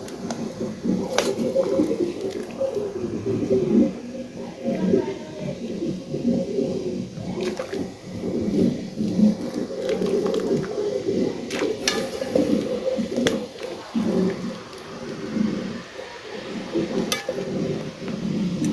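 Pot of water with chunks of meat at a rolling boil, bubbling continuously, with a few sharp clicks of a metal fork against the pot as pieces are lifted out.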